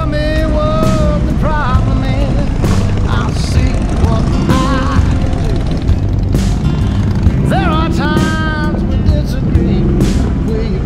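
A group of touring motorcycles rumbling as they idle and pull out one after another. Music and voices are heard over the engines at times.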